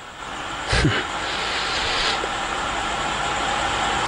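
A brief thump, then a steady rushing noise that swells in about a second in and holds, easing slightly halfway through.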